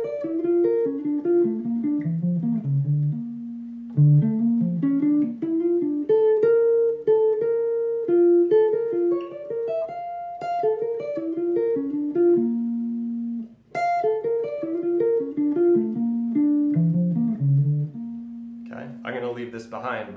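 Clean electric hollow-body jazz guitar playing single-note major-triad arpeggio lines with leading tones, practised in runs up and down one fretboard position. Each run settles on a held low note, with a short break between runs.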